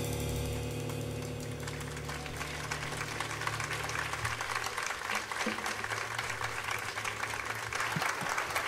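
The last low notes of a jazz trio's piece ring out and die away about four seconds in, while audience applause starts about two seconds in and carries on to the end.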